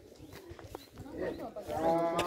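A long, drawn-out voice-like call that swells in over the last second and is held steady at the end. Underneath it is faint rustling of the phone against clothing.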